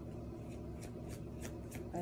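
A deck of tarot cards being shuffled by hand: a run of short, light clicks, several a second, over a steady low hum.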